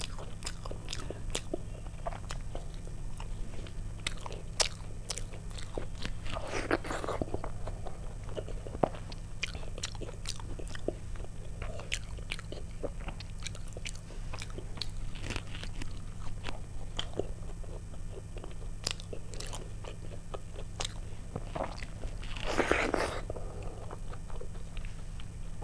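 Close-miked eating by hand: chewing and wet mouth sounds with many small clicks and smacks, as soft khichuri with fritters is eaten and mixed with the fingers on the plate. Two longer, louder stretches come about six seconds in and near the end, over a steady low hum.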